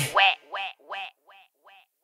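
A short pitched call repeated through a fading echo, about three repeats a second, dying away within two seconds after the music stops.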